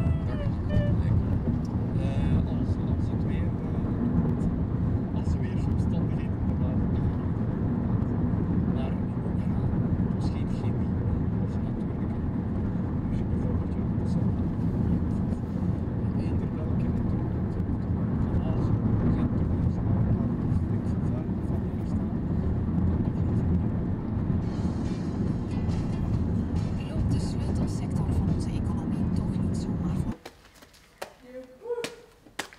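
Steady low road and engine rumble of a car driving at speed, heard from inside the cabin.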